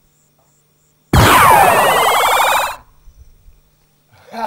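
A loud added film sound effect, about a second in: a sudden burst with many pitches sweeping downward together, lasting under two seconds and then cutting off abruptly. It marks a figure vanishing by supernatural power.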